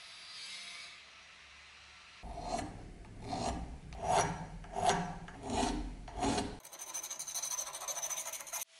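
Hand file scraping along the steel bevel of an axe head clamped in a vise, in about six even strokes, each roughly 0.7 s apart, followed by quicker scraping near the end. The file is cutting a new bevel on the axe.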